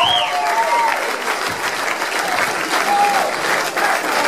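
Concert crowd applauding between songs, with a few high cries from the audience in the first second.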